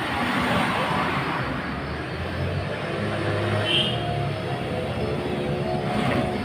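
Engine of a carburetted Honda Vario 110 scooter running steadily as it is ridden up, with its engine tone becoming clearer in the second half. It runs without the intermittent stutter (brebet) it had, a fault traced to a faulty side-stand switch.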